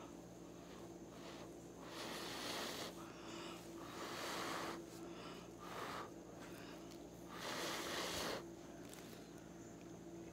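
Several soft puffs of breath blown by mouth at close range onto wet acrylic paint on a canvas, pushing a white area of paint out over the colours to open up a bloom. Each puff lasts under about a second and they come with pauses between them. A faint steady hum runs underneath.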